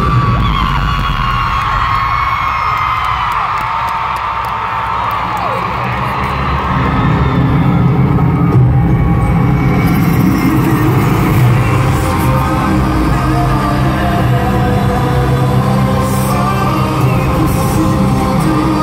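Loud live pop music at an arena concert, heavy in the bass, with the crowd screaming and whooping over it, recorded from the stands.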